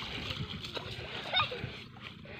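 Splashing of a small child's feet running through shallow water, dying away near the end, with a brief high voice about a second and a half in.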